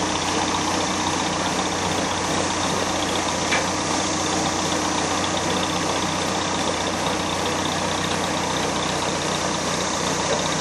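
A ferry's engine running steadily under a continuous high drone of cicadas, with one brief click about three and a half seconds in.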